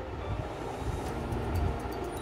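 A low, steady background rumble, with faint rustling as crepe saree fabric is handled.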